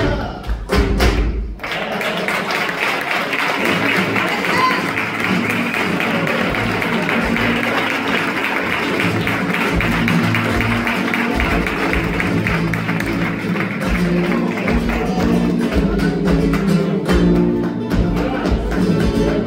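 Live flamenco bulerías: a Spanish guitar with handclapping, opening with a few heavy thumps in the first second or so. From about two seconds in, dense clapping fills the room over the guitar, thinning out near the end.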